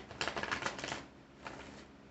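A deck of tarot cards being shuffled: a rapid run of papery card clicks lasting under a second, then a shorter flurry a moment later.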